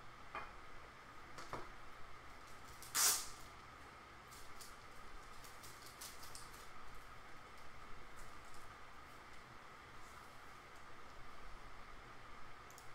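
Trading cards and hard plastic card holders being handled on a tabletop. There are a few light clicks, one short, loud rustle about three seconds in, then scattered faint clicks.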